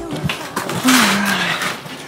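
A greenhouse door of clear corrugated panels scraping as it is pushed open: one drawn-out scrape with a low squeal falling in pitch. The door is dragging on the floor, which has expanded.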